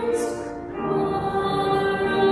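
A hymn sung by a choir, in held notes, with a short break between phrases about half a second in.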